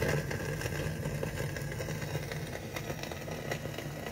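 Stylus riding the lead-in groove of an old record: steady surface hiss and low rumble, with scattered crackles and clicks.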